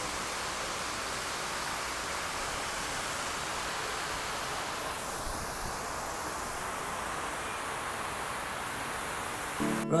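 Water from large fountain jets splashing into a basin: a steady, even rush of spray. Guitar music with singing begins right at the end.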